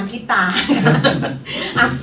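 Speech, with a woman chuckling as she talks.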